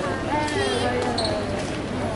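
Indistinct voices of people talking in an airport terminal hall over the hall's steady background noise, with one voice clearest about half a second to a second and a half in.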